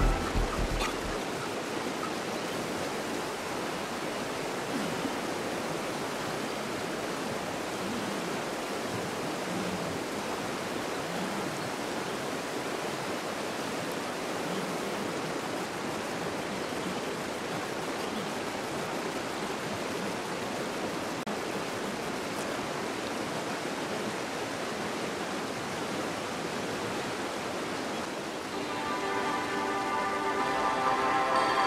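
Steady rushing of a fast-flowing river over gravel and small rapids. Background music fades out about a second in and comes back near the end.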